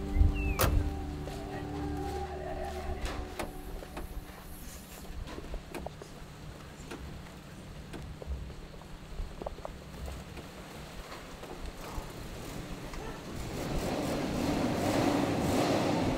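Volvo 240 being push-started by hand on a dirt yard: tyres rolling with scattered knocks and clicks. A louder steady noise builds near the end. The tail of background music fades out over the first few seconds.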